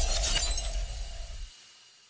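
Glass-shatter sound effect: a burst of tinkling shards over a low rumble, fading away about one and a half seconds in.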